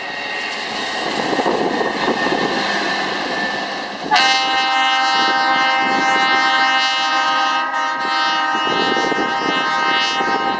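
A rail maintenance-of-way track machine rolls along the rails with a noisy rumble and clatter. About four seconds in, a railroad horn sounds one long, steady blast that holds through the rest.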